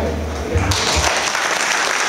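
A low bass note from the band's last chord dies away, and about a second in the audience starts applauding.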